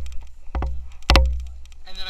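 Honda 300EX quad's engine running at low speed under heavy, gusting rumble on the rider-mounted camera's microphone, with sharp knocks, the loudest about a second in.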